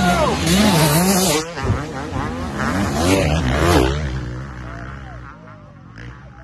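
Off-road vehicle engines run at full throttle as they race past through loose sand, swelling loudest about a second in and again around three seconds, then fading.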